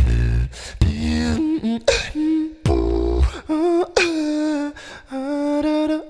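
A man singing held notes while beatboxing at the same time: deep bass kick sounds and sharp clicks under his sung melody.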